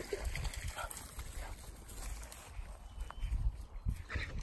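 Puppies at play, giving a few brief, faint vocal sounds over a low rumble.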